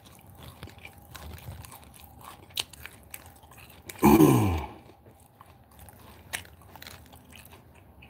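A person chewing food close to the microphone, with soft wet mouth clicks. About four seconds in comes one short, loud voiced sound from the mouth that falls in pitch.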